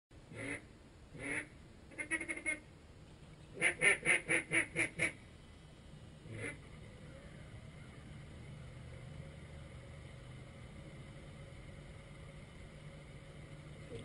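Duck quacking in short series: single quacks, a quick run of four, then a louder descending-style run of six, and one last quack about six and a half seconds in. After that only a faint steady background.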